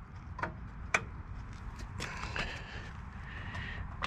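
A couple of light metallic clicks, then a faint scraping rub from about halfway through: a steel bolt being worked into the holes of a galvanized steel winch seat bracket.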